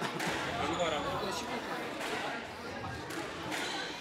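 A squash ball struck by rackets and hitting the court walls during a rally: a few sharp knocks spaced out over the seconds, echoing in a hall, over background chatter.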